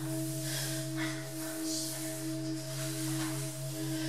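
A steady, unbroken drone of several held low tones.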